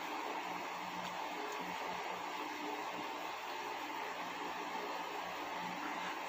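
Electric fan running, a steady even whir with a hiss.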